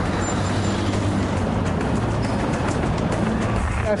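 Steady city road-traffic noise from cars moving slowly in congested traffic, mixed with a background music bed.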